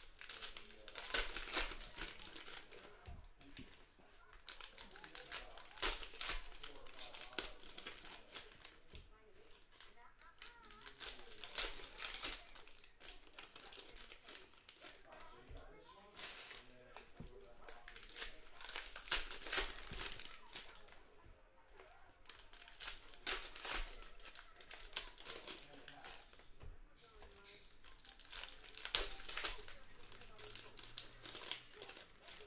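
Foil-wrapped trading-card packs crinkling and being torn open by hand, in repeated bursts of rustling every few seconds.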